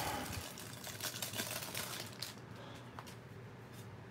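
Cellophane wrapper of a baseball card pack crinkling and crackling as it is torn open by hand, busiest in the first two seconds, then thinning to faint rustles and clicks.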